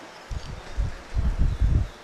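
A quick series of about six dull, low thumps over a second and a half.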